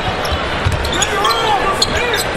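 A basketball being dribbled on a hardwood court, a few bounces about half a second apart, over the steady murmur of an arena crowd.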